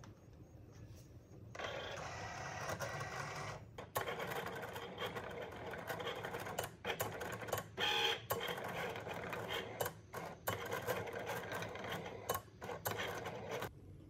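Cricut Explore Air 2 electronic cutting machine running a cut: its motors whir in quick stop-start moves as the cutting carriage shuttles and the mat feeds back and forth. It starts about a second and a half in, with short pauses and a few clicks, and stops just before the end.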